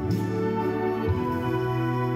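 Wind orchestra music: brass holding sustained chords over a steady bass note, with a couple of low drum beats.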